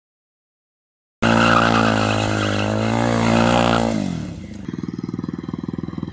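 Motorcycle engine starting abruptly about a second in, held at high revs, then falling back around four seconds in. It gives way to a motorcycle running at low revs with a rapid, even pulsing.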